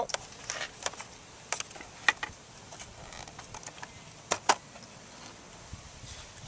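Scattered small plastic clicks and taps as the relays in a motorcycle's relay box are handled and pulled out of their sockets, the loudest pair about four and a half seconds in.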